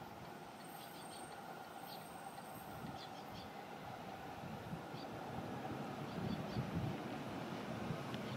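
JR East E531 series electric train approaching the station, its running noise on the rails growing steadily louder as it nears.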